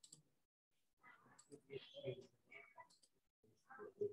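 Near silence, with a couple of faint clicks at the start, then a faint, indistinct voice.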